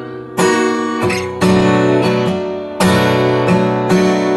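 Steel-string acoustic guitar strummed in a down-and-up pattern through one bar, with several hard strokes ringing out. The chord changes from Amaj7 to Am7 on the last upstroke of the second beat.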